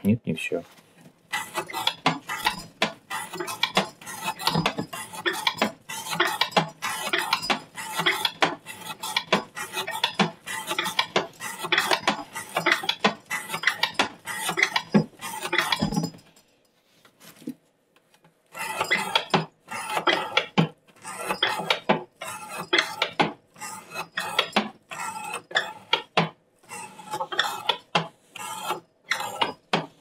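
A CPM 15V steel knife blade in a weighted rope-cutting test rig, drawn repeatedly through rope in a fast run of rasping slicing strokes with metallic clatter from the rig. The strokes pause about sixteen seconds in and resume about two seconds later. It is late in a cut-count test, and the dulling edge often fails to cut through the rope.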